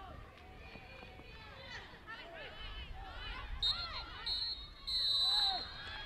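Referee's whistle blown three times, two short blasts and then a longer one, the full-time whistle ending the match. Players' shouts carry across the pitch around it.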